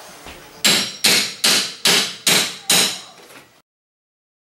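Six hammer blows in a quick, even row, about two and a half a second, each with a short ring, knocking a pry bar in behind baseboard trim to lever it off the wall. The sound cuts off suddenly near the end.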